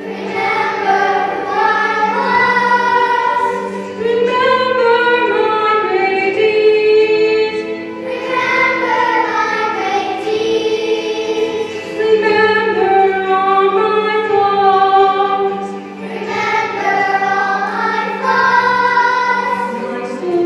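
Children's choir singing a song, in phrases about four seconds long.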